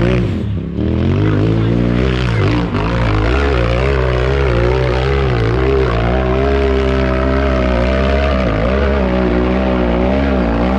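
Off-road buggy engine at full throttle on a steep dirt hill climb. It dips briefly about half a second in, revs up over the next couple of seconds, then holds a loud, steady high-revving note as the buggy climbs the slope.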